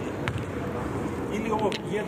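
A basketball bouncing once on the court near the start, over steady hall noise, with voices starting up toward the end.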